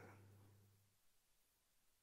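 Near silence: a pause between a man's spoken phrases, with a faint low hum fading out within the first second.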